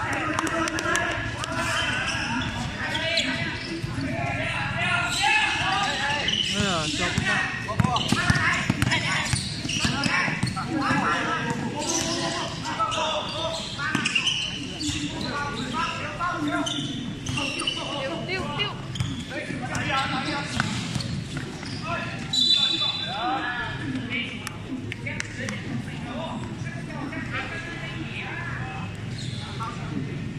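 Basketball being dribbled and bounced on a hard court during a game, under continuous shouting and chatter from players and spectators.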